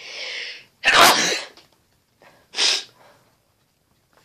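A man sneezing, set off by something stuck in his nose: a sharp in-breath, then a loud sneeze about a second in, and a second, shorter burst about two and a half seconds in.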